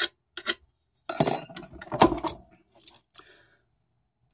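Small steel parts clinking and rattling together as a hand-bent steel rod with an eye loop is handled and fitted into its metal fitting. There are a few sharp clinks, a busier rattle about a second in and a loud single clink about two seconds in.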